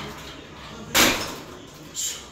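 Weight stack of a multi-gym chest press machine dropping back with a single loud clunk about a second in, as the handles are released at the end of a set.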